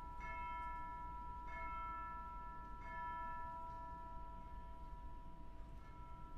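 Tubular bells (orchestral chimes) in a wind band, struck softly three times about a second and a half apart, each stroke ringing on and slowly fading.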